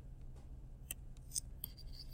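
Faint clicks and scratches of a stylus tapping and writing on a tablet screen, a few separate ticks over a steady low hum.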